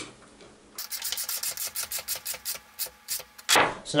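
A 7/16 wrench tightening a quarter-twenty bolt: a quick run of metal clicks, about seven a second, starting about a second in and stopping shortly before the end.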